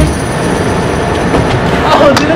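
Steady rumbling outdoor background noise, with a voice starting near the end.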